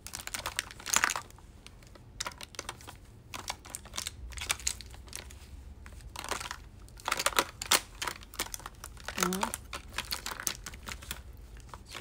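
A phone being handled close up: irregular clicks, taps and rustles on its microphone.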